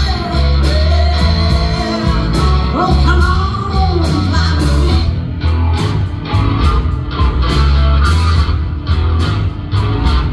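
Live blues band playing: a Telecaster-style electric guitar lead with bent notes over a heavy bass line and a steady drum beat.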